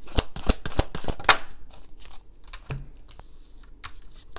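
A deck of tarot cards being shuffled by hand: a fast run of card flicks in the first second and a half, then a few scattered single snaps as the cards are handled.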